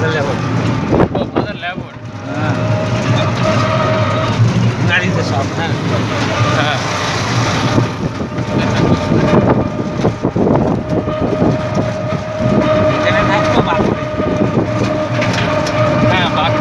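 A vehicle running along the road, heard from on board: a steady low rumble with a steady whine that fades out for several seconds in the middle and then returns. Indistinct voices are mixed in.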